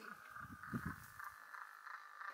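A steady, high, pulsing trill from calling animals in the background, with a short low rumble about half a second in.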